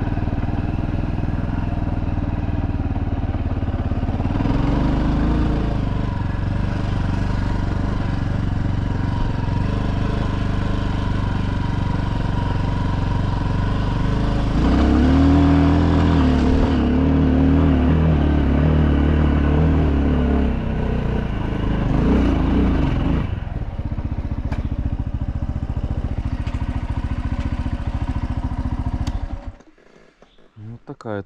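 Minsk X250 motorcycle's single-cylinder engine running on the move, its pitch rising and falling with the throttle in two stretches. The engine is switched off near the end, and the sound cuts out suddenly.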